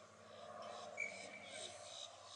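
Faint, distant shouting voices of players on a rugby field, with a brief thin high tone about a second in.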